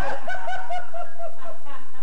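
A man laughing in a fit of rapid, evenly repeated short bursts.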